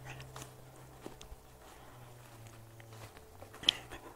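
Quiet handling and walking sounds from a handheld camera moving through grass: faint scattered rustles and clicks over a low steady hum, with one sharper click near the end.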